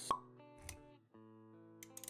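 Intro jingle music with a sharp pop sound effect just after the start and a low thump a little over half a second in; the music drops out briefly and comes back about a second in with held notes.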